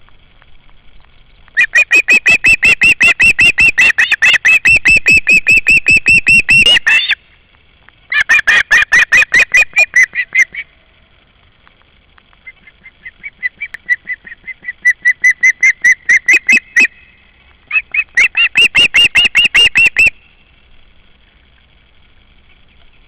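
Osprey calling: rapid runs of shrill, whistled chirps in four bouts, the first and longest lasting about five seconds, the third starting softly and building.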